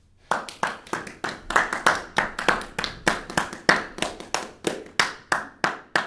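Audience hand clapping, starting suddenly and running on in a steady rhythm of about three claps a second.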